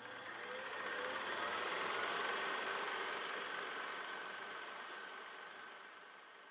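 Intro sound effect: a soft, noisy swell with a faint high steady tone, rising over the first two seconds and then fading away.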